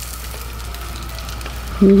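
Flour-dredged fish frying in hot oil in a skillet: a steady sizzle. A voice comes in near the end.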